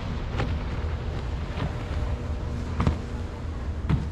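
Wind buffeting the microphone as a low, steady rumble, broken by four brief knocks spaced about a second apart.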